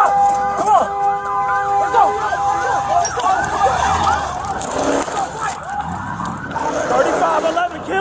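Emergency-vehicle siren in a fast yelp, rapid rising-and-falling sweeps repeating several times a second. For the first few seconds a steady multi-note tone sounds over it, then cuts off.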